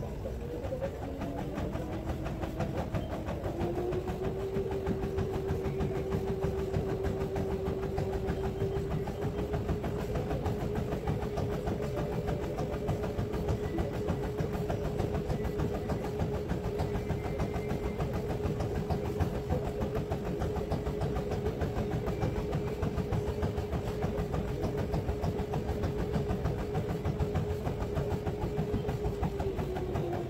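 Treadmill motor whining as the belt speeds up, its pitch rising over the first few seconds and then holding steady over a low rumble; the pitch drops near the end as it slows.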